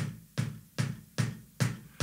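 Kick drum pedal played in single down-up strokes, an even beater hit about every 0.4 s, about five in all. The foot stays on the footboard and lets the beater come off the head quickly after each stroke.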